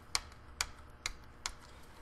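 Plastic retention latches on a motherboard's memory (RAM) slots being flipped open, four short sharp clicks about half a second apart.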